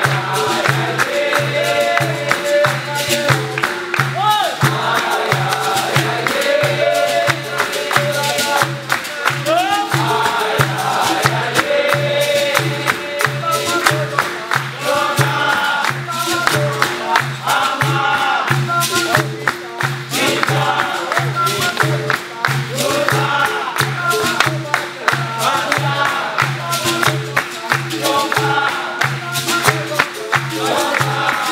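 Capoeira roda music: berimbaus and an atabaque drum keeping a steady low beat, hand clapping from the circle, and group singing.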